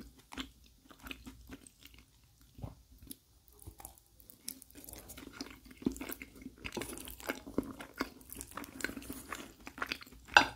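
Close-miked chewing of soft lasagna, with wet mouth clicks and smacks. From about halfway through, a wooden fork cuts through the layered pasta and taps the plate, giving denser, sharper clicks.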